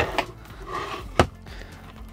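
Workbench handling noise: a soft rustle as small parts and wires are moved about on a work mat, ending in one sharp click about a second in.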